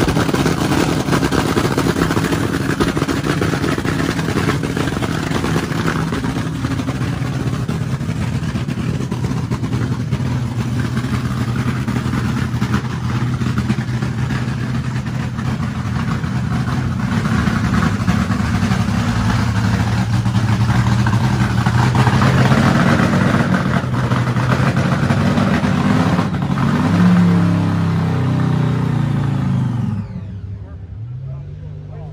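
Drag race car's engine running during a warm-up, holding a steady speed at first. Its revs climb through the second half, with a few quick blips near the end, and it cuts off right at the end.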